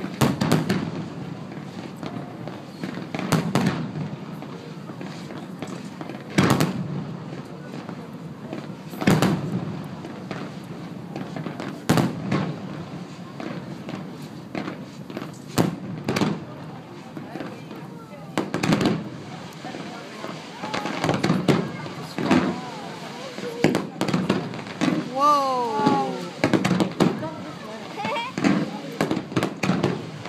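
Aerial firework shells bursting overhead, one sharp bang about every three seconds at first, then coming faster and overlapping in the second half.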